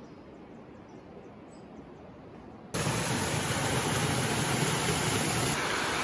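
A quiet background with faint ticks. About three seconds in, it switches suddenly to heavy rain, a steady loud hiss.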